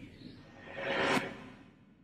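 Whoosh sound effect of an animated logo intro, swelling to a peak about a second in and then fading away, over a faint low rumble.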